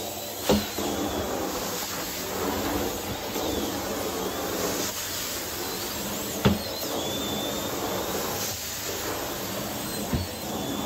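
Carpet-cleaning extraction wand pulling water out of the carpet with a steady rushing suction hiss as it is drawn over the pile. Two sharp knocks stand out, one about half a second in and one around six and a half seconds.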